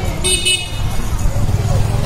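A brief high-pitched toot about a quarter second in, over a steady low rumble.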